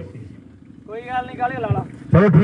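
Mostly speech: after a short lull with faint steady background rumble, a man's voice says a word about a second in.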